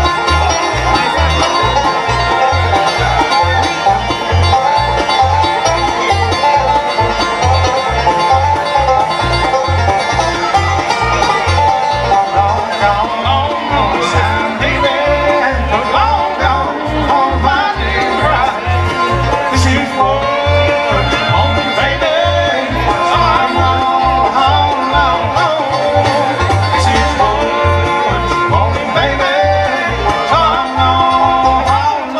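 A live bluegrass band playing: a driving banjo lead over fiddle, acoustic guitar and mandolin, with a regular low bass pulse underneath.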